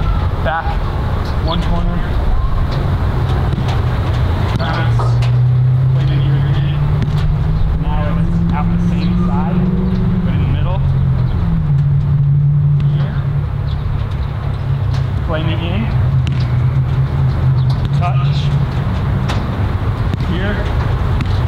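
A steady low engine drone whose pitch climbs slowly for several seconds, then drops back about halfway through and holds. Faint fragments of voices sound over it.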